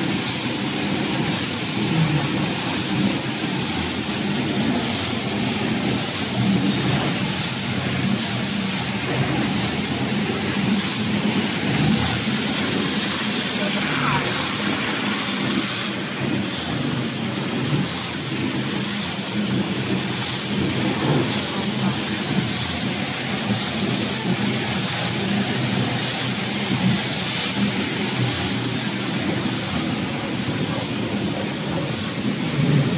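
Workshop machinery running: a steady loud rushing noise with a low rumble underneath.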